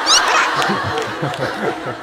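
Men laughing, a run of snickering chuckles.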